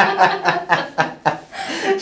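Light laughter: a run of short chuckles that fades out about a second and a half in.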